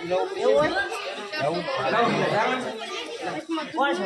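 Several people talking over one another in lively conversation.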